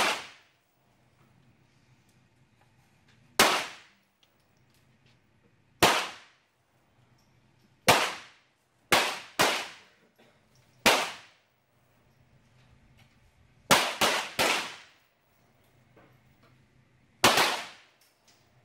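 .22LR semi-automatic target pistols fired by several shooters on neighbouring lanes: single sharp shots at irregular intervals, about eleven in all, including a quick run of three around two-thirds of the way through. Each crack has a short echo under the range roof.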